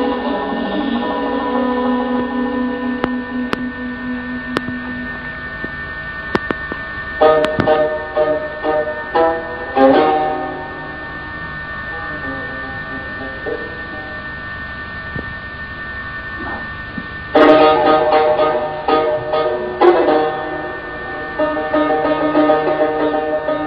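Persian classical music on a plucked tar. Sustained ringing notes are broken by two flurries of quick plucked strokes, one in the middle and a louder one near the end.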